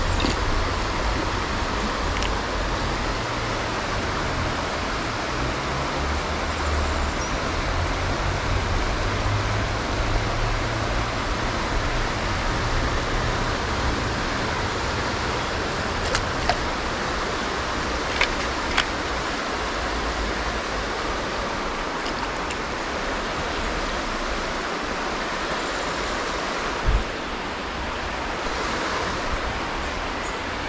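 River water running steadily, a continuous even rush, with extra low rumble in the first half. A few faint clicks and one short thump sound near the end.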